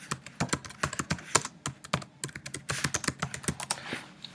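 Typing on a computer keyboard: a quick, uneven run of key clicks with a short pause about halfway through.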